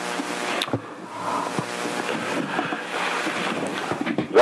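Rushing noise like wind on a microphone, with a steady hum under it, coming over a noisy telephone line.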